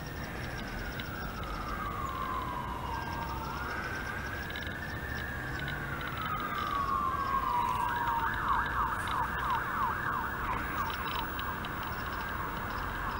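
Emergency vehicle siren sounding a slow wail that falls, rises and falls again, then switches to a fast yelp about eight seconds in, over a low rumble of traffic.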